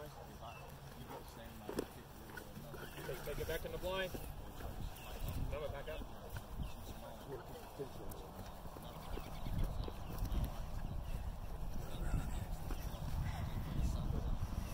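A Dutch Shepherd vocalizing while gripping and tugging on a bite sleeve in protection training, with scuffling and thuds of dog and helper moving on grass. The dog's short pitched calls come mostly in the first half, and the scuffling grows louder in the second half.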